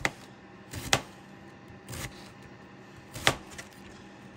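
Kitchen knife slicing a wedge of green cabbage into strips on a plastic cutting board: four separate cuts about a second apart, the last one, past three seconds in, the loudest.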